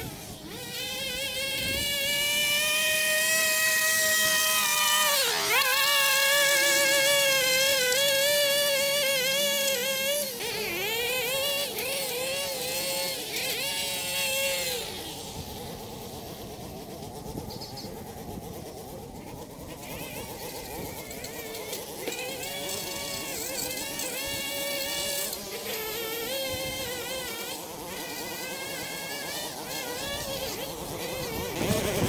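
Small gas engines of lawn equipment running, their pitch wavering and dipping sharply a couple of times in the first third as the throttle eases and picks up again. The engines are louder in the first half and fainter after about halfway.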